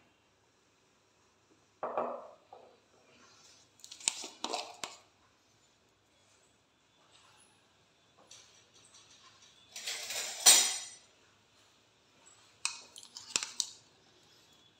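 A few short clinks and clatters of kitchen utensils and containers, with near-quiet between them; the loudest, a rustling clatter ending in a sharp click, comes about ten seconds in.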